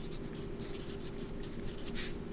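Sharpie felt-tip marker writing on paper: a quick run of short, irregular strokes as letters are written.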